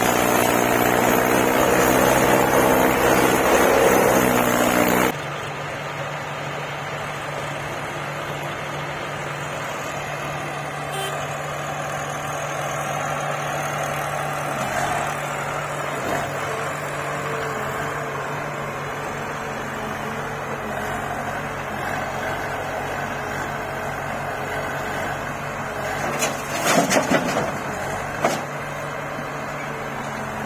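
Diesel tractor engine running loudly under load as it pulls a loaded trolley, cut off abruptly about five seconds in. After that, the diesel engines of a tractor and a backhoe loader run steadily at a lower level, with a few sharp knocks near the end.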